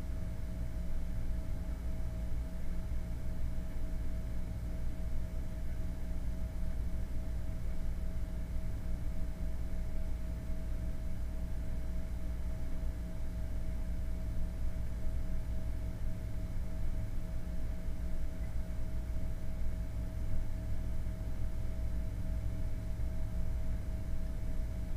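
Steady low background hum with a faint, even mid-pitched tone held throughout; nothing starts or stops.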